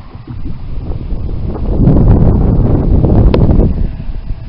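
Wind buffeting the camera's microphone, a loud low rumble that swells about halfway through and eases near the end.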